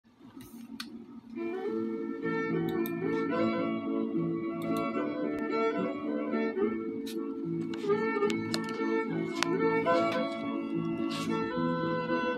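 Instrumental music, with sustained melodic notes over a steady accompaniment. It fades in over the first second and a half.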